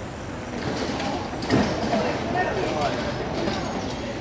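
Indistinct chatter of people's voices with steady background noise, and a sharp knock about a second and a half in.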